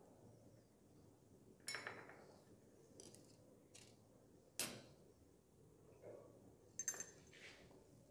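Laboratory glassware being handled: three faint, sharp glass clinks a few seconds apart against near silence.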